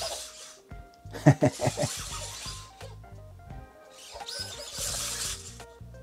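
Eilik desktop robots playing out a fight routine: short squeaky, gliding cartoon-voice chirps about a second in, and two spells of whirring from their small servo motors as they turn and move their arms. Background music with a steady bass line runs underneath.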